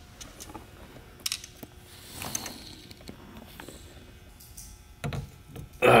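Faint, scattered clicks and light metallic rattles of a steering wheel's mounting hardware being handled at the hub as the wheel is unbolted and swapped, with a soft rustle about two seconds in.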